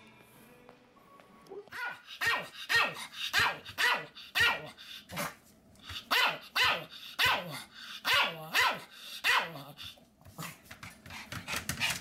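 Pomeranian barking over and over, about two barks a second, starting about two seconds in, with each bark falling in pitch; the barks turn into quicker, quieter yaps near the end.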